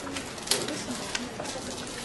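Marker writing on a whiteboard: several short scratchy strokes, the loudest about half a second in.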